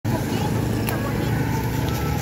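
Steady low rumble of nearby motor traffic, with a faint click about a second in.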